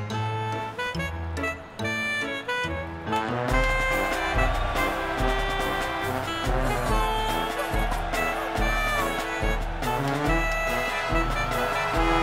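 Upbeat brass marching-band music. About three and a half seconds in, a deep steady beat enters, about one beat a second.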